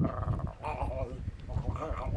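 Two short, wavering vocal cries, one about half a second in and one near the end.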